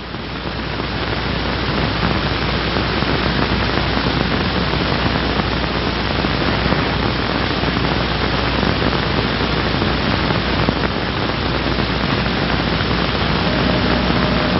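Loud, steady hiss with a low hum underneath: the surface noise of an old 16mm film soundtrack with no narration or music on it. It swells up over the first two seconds and then holds steady.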